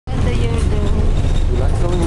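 Steady low rumble of a bus heard from inside the passenger cabin, with voices over it.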